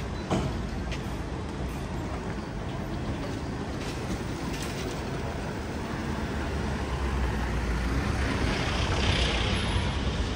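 A van drives up and passes close by over steady street traffic, its engine and tyre noise swelling to the loudest point near the end. A short sharp knock sounds just after the start.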